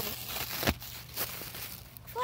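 Plastic air-pillow packaging crackling in a few sharp clicks as a dog grabs it in its mouth, the strongest crackle about two-thirds of a second in.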